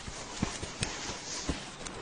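Donkey's hooves clopping at a slow walk: a few separate knocks over a light steady hiss.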